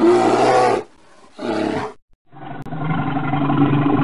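Bear growling: two short growls in the first two seconds, then a longer, lower growl.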